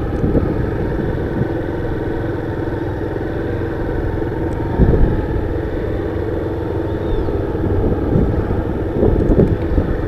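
Honda CG 160 Fan motorcycle's single-cylinder four-stroke engine running as it is ridden through tight turns, heard from the rider's seat. A single thump about halfway through.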